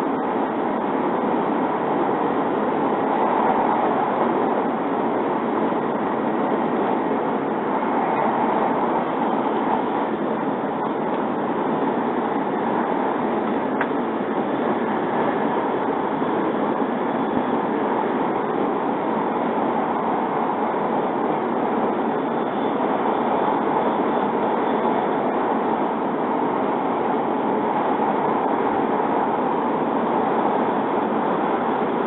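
Steady running noise of a W7 series Shinkansen train heard from inside a passenger car: an even, unbroken rush that stays at the same level throughout.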